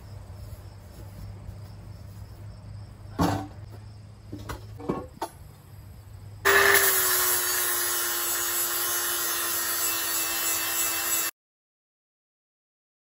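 A few knocks of a steel I-beam being handled on a steel welding bench. Then, about six and a half seconds in, a cordless angle grinder starts and grinds the steel I-beam with a loud, steady whine whose pitch settles slightly lower as it bites. It stops suddenly near the end.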